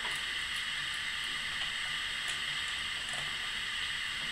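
Steady recording hiss with a few very faint light ticks.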